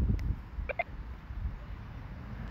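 Wind rumbling on an outdoor microphone, with two brief faint pitched chirps close together about three quarters of a second in.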